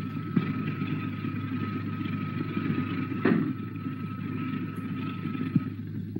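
A motor-driven experiment cart running steadily, a low mechanical rumble with a thin steady whine over it and one sharp knock about three seconds in, heard on an old film soundtrack.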